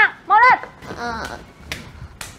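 A young girl's two short reluctant whines, each rising then falling in pitch, followed by fainter shuffling and a light click near the end.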